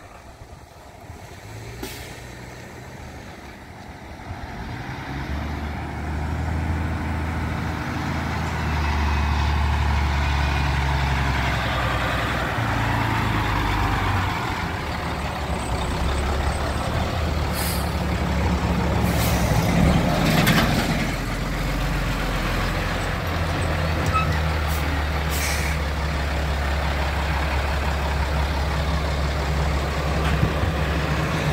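A Peterbilt semi truck's diesel engine grows louder over the first several seconds as it comes near, then runs steadily as the truck rolls slowly past. In the second half come several short hisses of air from its air brakes.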